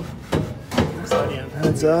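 Two short metallic clunks as a steel exhaust tailpipe is worked loose and slid out of a muffler outlet, followed by a man's voice.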